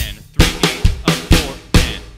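Acoustic drum kit played slowly: five evenly spaced strokes, about two a second, each a bass drum hit with a snare or cymbal crack on top. It is the bass drum keeping straight eighth notes under a snare fill.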